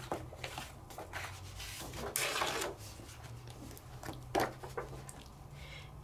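A sheet of cardstock being slid out from a stack of paper and handled, with a brief papery swish about two seconds in and a single light tap a couple of seconds later.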